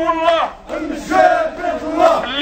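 A crowd of men chanting a slogan in unison, led through a megaphone, with a brief break in the chant just over half a second in.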